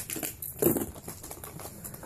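Handling noise of fishing lures and their plastic packaging: scattered light clicks and rustles, the loudest a little over half a second in.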